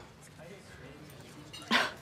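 A woman's single short, breathy laugh near the end, over quiet room tone.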